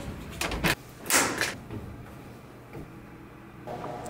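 A door being unlatched and opened: a few short clicks or knocks, then a brief rush of noise about a second in as it swings open.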